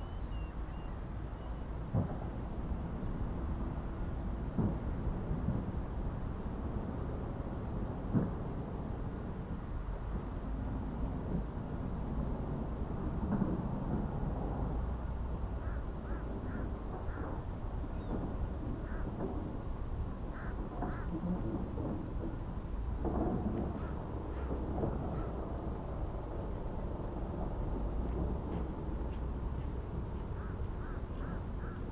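Steady low rumble of wind on the camera microphone, with a few brief knocks in the first seconds. From about halfway on come groups of short, repeated bird calls.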